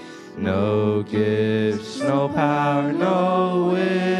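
Mixed group of young voices singing a hymn in unison into handheld microphones, with long held notes after a short breath between phrases at the start.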